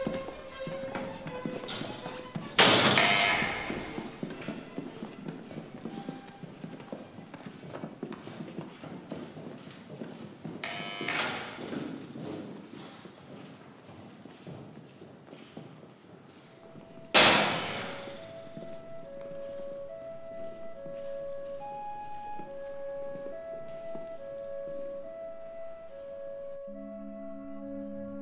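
Heavy metal doors banging shut in a hard, echoing corridor: two loud slams about fifteen seconds apart with a softer bang between them, over a patter of footsteps. A little after the second slam, a slow melody of held notes begins.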